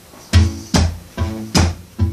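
Ovation Standard Balladeer acoustic guitar played in a slap fingerstyle pattern: pinched bass-and-treble notes alternating with percussive slaps on the strings. It keeps a steady rhythm of about five strokes in two seconds.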